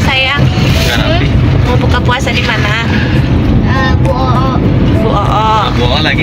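Steady low rumble of a car cabin on the move, engine and road noise, with people's voices talking over it at several moments.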